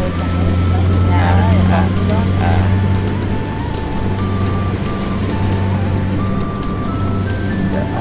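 Steady low drone of a Kubota combine harvester's diesel engine harvesting rice, with a simple tune of single high notes stepping up and down over it. Faint voices can be heard about one to two and a half seconds in.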